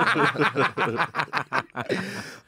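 Men laughing hard in rapid, breathy pulses.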